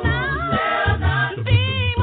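A cappella gospel vocal group singing in harmony, several voices moving together over a strong low bass part, with no instruments.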